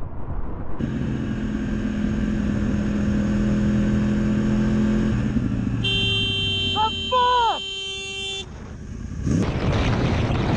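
A vehicle horn blares for about two and a half seconds, with a voice briefly crying out over it, after a steady pitched drone of vehicle noise lasting several seconds.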